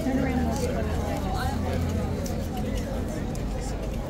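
Chatter of people talking, with a low steady rumble underneath.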